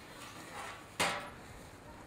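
A single sharp metal clack about a second in, as the saw guide of a metal skull-cutting jig is shifted and knocks against the jig's frame. Softer handling sounds come before it.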